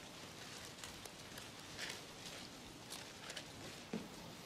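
Faint, scattered rustles of Bible pages being turned, over low room tone.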